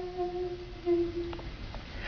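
A voice holding a sung note that has dropped to a soft hum, fading away and stopping a little past halfway through. Two faint clicks follow in the quiet.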